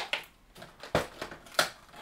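Cardboard advent calendar door being pried open by hand: a few short crackles and scrapes of card, with one sharper knock about a second in.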